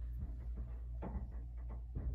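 Soft handling noise of a stethoscope chest piece and tubing being moved and set against the chest: a few quiet knocks and rustles, clustered in the second half, over a steady low hum.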